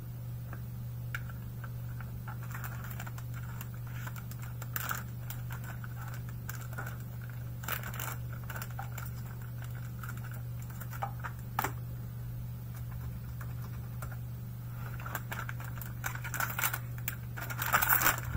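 Typing on a computer keyboard: scattered key clicks over a steady low hum. Near the end comes the rustle of plastic wrapping being handled.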